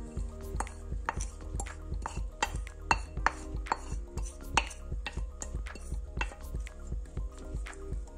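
Wooden spoon knocking and scraping against a ceramic plate and a stainless steel pot as sliced leeks are pushed into the oil and stirred: a run of irregular light clicks and taps, several a second.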